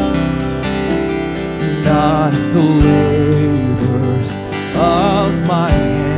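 Worship song played live on two strummed acoustic guitars, with a sung vocal line that comes in about two seconds in and again around five seconds in.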